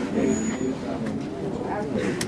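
Indistinct, low voices murmuring in a room full of people, with no words clear enough to make out.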